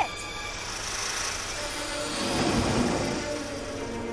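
Cartoon car pulling away: a rushing engine swell that builds to its loudest about two and a half seconds in, under background music.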